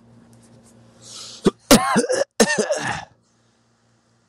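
A voice on a played-back voicemail recording coughing and clearing its throat in a few loud bursts over a faint steady hum. It cuts off suddenly about three seconds in.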